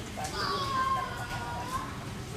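Children's voices, one child giving a single long call that falls slightly in pitch.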